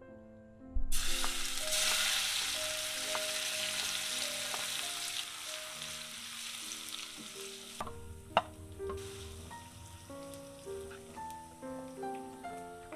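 Chopped shallots and garlic hitting hot oil in a wok, starting with a sudden loud sizzle about a second in and then frying steadily as the sizzle slowly fades while they are stirred. Later come a few sharp clicks of a spatula against the pan. Soft piano music plays throughout.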